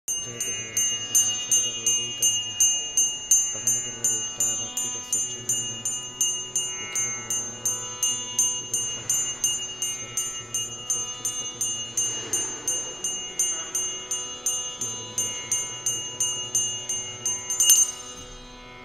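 Small metal hand bell (puja ghanta) rung steadily at about three strokes a second, its high ring carrying between strokes, stopping suddenly near the end after a last louder clang. It is rung during an oil-lamp worship (aarti).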